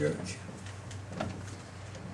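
Dry-erase marker on a whiteboard, making a few short squeaky strokes as letters are written, over a steady low hum.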